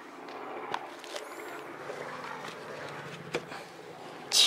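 Faint outdoor background with a few scattered clicks and taps from walking on paving and the camera brushing against clothing.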